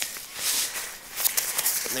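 Rustling and crackling of a backpack's nylon fabric and webbing straps as the pack is handled, swelling twice.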